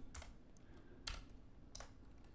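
A few faint, separate keystrokes on a computer keyboard, about three taps spread over two seconds.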